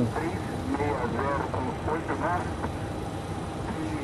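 Steady hum and hiss of a Boeing 737-800 flight deck on the ground, with faint voices talking in the background during the first half.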